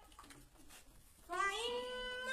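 After a short pause, a high voice starts singing about 1.3 seconds in, holding one long note that slides up in pitch, a line of an unaccompanied naat.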